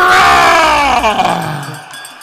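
A drawn-out vocal shout by one person, held and then sliding down in pitch as it fades near the end.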